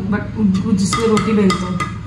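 Mostly a voice talking, with a few short clicks of a kitchen knife blade working into the lid of a tin can.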